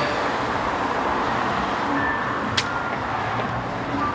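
Steady road traffic noise from passing cars, with one short sharp click about two and a half seconds in.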